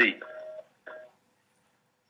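A man's voice ends a word, followed by two faint, brief tone-like sounds within the first second. Then there is complete silence, as if a noise gate has cut in on the call audio.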